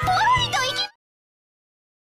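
High-pitched, strained squeals from two girls' voices as they struggle, over background music. Both cut off abruptly just under a second in, leaving dead silence.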